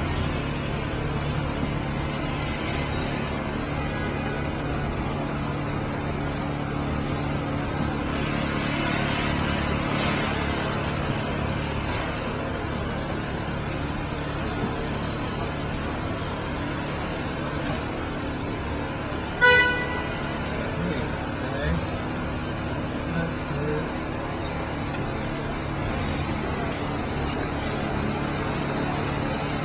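Steady city street traffic noise, with one short car horn toot about twenty seconds in.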